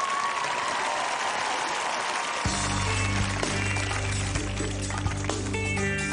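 Studio audience laughing and applauding. About two and a half seconds in, music starts suddenly with a steady bass line, and higher instruments join near the end.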